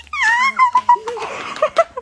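A high-pitched, excited voice squealing: one long held cry that sinks a little, then a few short squeaks near the end.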